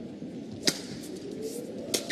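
Badminton racket strings hitting the shuttlecock twice during a rally: two sharp cracks about a second and a quarter apart, the second the louder.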